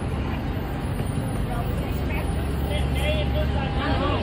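Steady low rumble of road traffic that swells in the second half, with indistinct crowd chatter that gets a little clearer near the end.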